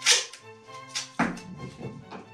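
Masking tape pulled off the roll and torn: a few short rasping rips, the loudest right at the start and two more about a second in, over background music.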